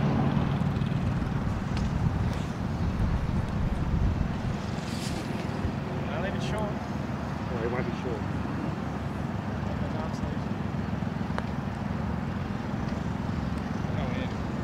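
Steady low outdoor background rumble, with faint voices murmuring briefly in the middle.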